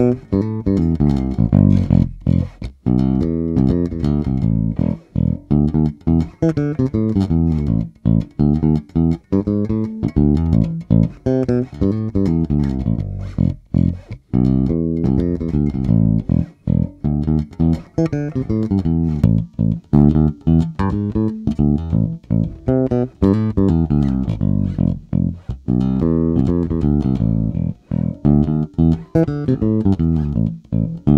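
Electric bass, a Sterling by Music Man Ray4 SUB heard through its stock pickup, playing a repeating test riff of separate plucked notes with short breaks between phrases.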